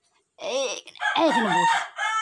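A bird's crowing call, like a rooster's cock-a-doodle-doo: a short rising-and-falling note, then a longer, louder note lasting about a second.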